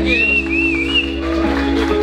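A rock band's final chord held and ringing out on bass and guitars, with a person's whistle, two or three quick rising-and-falling calls, over it in the first second.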